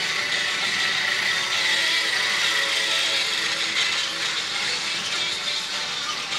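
Battery-powered toy train running along plastic track, its small motor and gears whirring steadily, with a pop song playing from a laptop.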